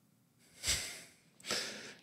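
Two short breath noises close to a microphone with no voice in them: one about half a second in, and a sharper one, like a sniff through the nose, about a second and a half in.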